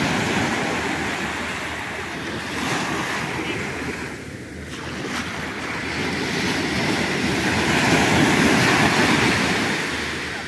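Sea surf washing onto a sandy beach: a continuous rushing noise that dips briefly about halfway through, then swells to its loudest near the end as a wave comes in.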